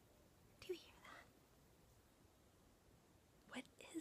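Near silence, broken by brief soft whispering about a second in and again near the end.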